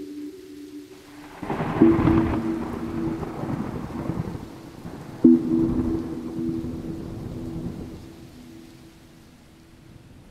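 Thunder rumbling, rising about a second and a half in and dying away over the last few seconds. A low sustained two-note musical tone sounds over it, struck twice, at about two and five seconds.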